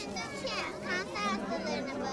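Children's voices chattering, several young voices talking over one another.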